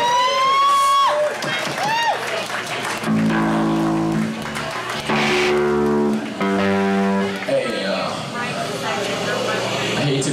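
Live rock band with electric guitar: a voice wails with sliding pitch through the first two seconds, then the band holds three long chords, each about a second, with short breaks between them.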